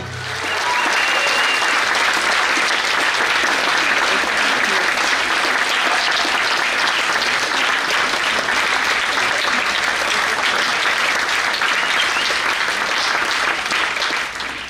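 Small audience applauding with steady clapping that keeps on without a break.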